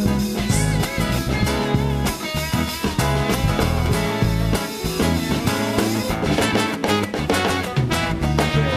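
Live acoustic rock band playing a passage of the song, strummed guitar over held bass notes and a steady drum-kit beat.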